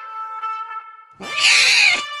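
A cat's single drawn-out meow a little after a second in, its pitch dropping at the end, over background music of held notes.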